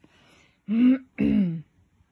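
A woman clearing her throat: two short voiced bursts in quick succession, about a second in.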